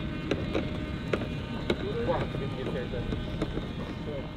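Outdoor crowd background over a steady low rumble, with a voice calling out about two seconds in and several sharp clicks scattered through.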